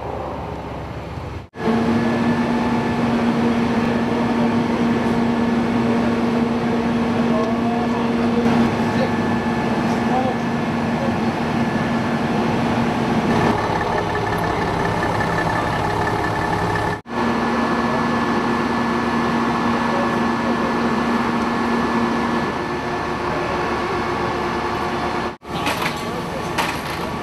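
Steady drone of fire apparatus engines running at a fire scene, a held hum under a constant wash of noise, with voices in the background. The sound breaks off sharply three times.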